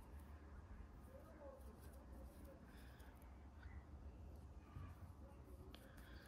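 Near silence: room tone with a low hum and faint soft handling sounds of yarn and a steel crochet hook as chain stitches are worked.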